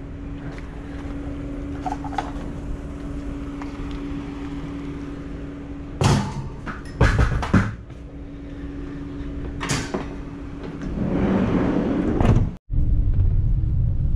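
Salvaged items are loaded into the back of a van over a steady low hum, with several loud knocks and bangs about six to ten seconds in, typical of the van's doors shutting. Near the end the sound cuts to the van running on the road, a steady low rumble.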